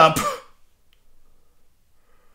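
A man's voice loudly exclaiming the end of "Hold up!" in the first half second, then quiet room tone with only faint sounds.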